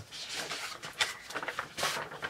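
Paper dust jacket rustling and crinkling as it is slid off a hardcover book, with a few crisp crackles, the loudest near the end.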